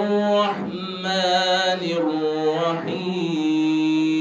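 A man chanting a Qur'an recitation in a melodic, drawn-out style into microphones, with long held notes broken by short breaths; from a little past three seconds in he holds one note steadily.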